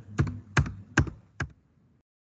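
Computer keyboard keys pressed four times, about one every half second, each a short sharp click.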